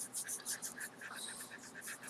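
Hand-held drawing tool scratching across paper in quick, short strokes, about four or five a second.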